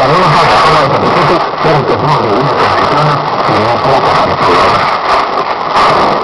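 Weak shortwave AM broadcast played through a receiver: a man talking in Spanish, muffled and hard to make out under steady hiss and static.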